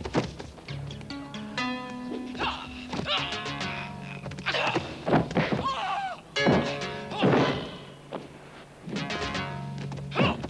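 Repeated punch and blow sound effects of a movie fistfight over dramatic film-score music with a low sustained note.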